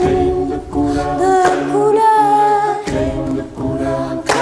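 Mixed a cappella choir singing wordless, hummed harmonies in several parts over a low sustained bass voice, with pitches gliding between held notes. Short sharp accents cut through about every second and a half.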